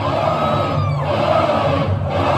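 Large concert crowd shouting and cheering in a break in heavy metal music, in two surges of about a second each, with the band quieter underneath.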